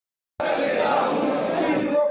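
A group of men reciting a pledge together in unison, many voices at once, starting abruptly a moment in.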